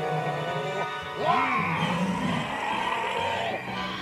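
Animated cartoon soundtrack: dramatic background music, with a cat-like monster's growl about a second in that rises and falls in pitch.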